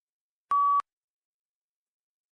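A single short electronic beep, one steady pitch lasting about a third of a second, about half a second in. It is the PTE test software's cue that recording of the spoken answer is starting.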